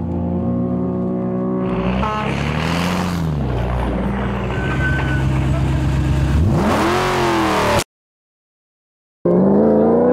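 Dakar rally car's engine running at idle with a brief rev, then accelerating hard with a sharply rising pitch as the car pulls away. The sound cuts out completely for over a second near the end, then the engine is heard again close by.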